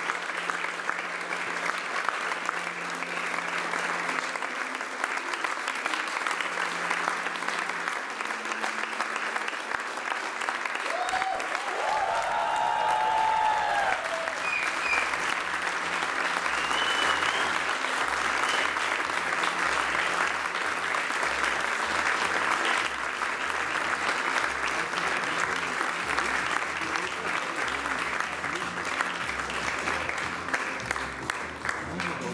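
Audience applauding steadily and at length, with a voice briefly heard over the clapping about twelve seconds in.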